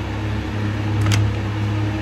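A steady low mechanical hum with a faint overtone buzz, and a single short click about a second in.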